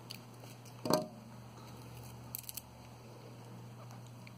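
Scissors snipping nylon beading thread: one sharp snip about a second in, then a few light clicks a little after the middle.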